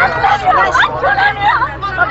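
Excited Persian speech, several voices talking over one another, over a steady low hum.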